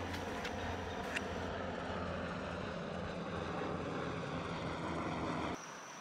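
Two helicopters flying over, a steady low drone of rotors and engines that cuts off suddenly near the end.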